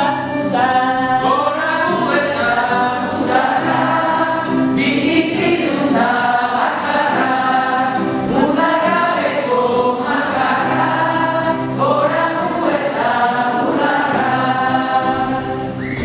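A group of women's voices singing a song in Basque together, in sustained phrases, with acoustic guitar accompaniment.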